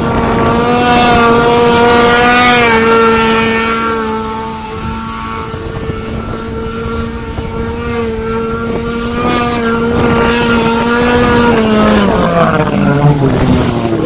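Snowmobile engine held at high, steady revs while skimming across water in watercross, dipping in loudness about four seconds in and rising again, then falling in pitch near the end as the throttle eases off.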